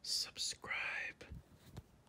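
Whispered speech: a short, breathy whispered line of a few words, opening with hissing 's' sounds.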